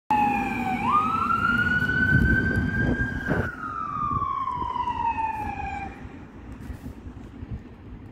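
Siren of a Mercedes Sprinter emergency ambulance on blue lights as it passes and drives away, with engine and road noise underneath. The tone jumps up in pitch about a second in, rises slowly, then glides down in one long fall and fades out about six seconds in.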